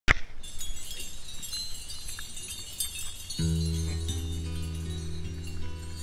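Background music: high tinkling notes, with low sustained notes coming in about halfway through.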